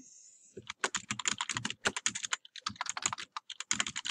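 Computer keyboard typing: a quick run of keystrokes starting about half a second in, with a brief pause near the end before a few more keys.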